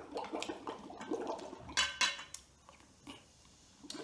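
Soda being slurped and bubbled through a straw in a glass of foamy soda, with a few sharp clicks mixed in; it stops about two and a half seconds in.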